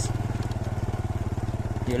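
Small motorcycle engine running steadily at low speed, its exhaust pulsing evenly and rapidly.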